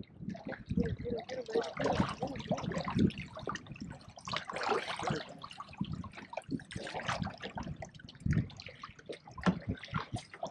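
Water lapping and splashing irregularly against the hull of a bass boat on choppy water, with faint low voices in the background.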